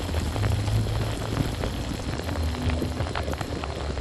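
Shower water pouring onto a GoPro Hero 7 in a bathtub, picked up by the camera's own built-in microphones: a steady hiss of falling water with a low rumble and a patter of drops striking the camera.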